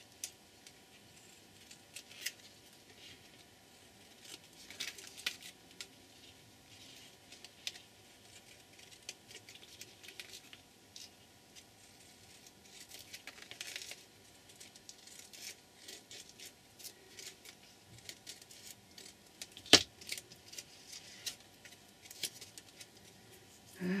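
Small scissors snipping, with scattered rustles and light clicks of tape and plastic strips being handled. One sharp knock comes about twenty seconds in.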